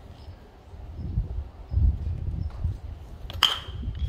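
A single sharp ping of a metal baseball bat hitting a pitched ball about three and a half seconds in, with a brief ringing tone after the hit. A low dull rumble comes just before two seconds in.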